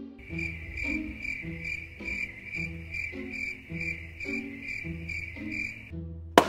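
Cricket-chirping sound effect, a steady high chirp pulsing about two and a half times a second: the stock gag for an awkward silence. Soft background music runs beneath it.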